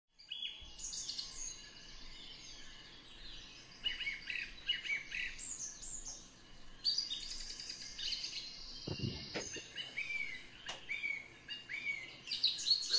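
Faint birdsong, several birds chirping and trilling in short, repeated phrases, with a brief low thump about nine seconds in.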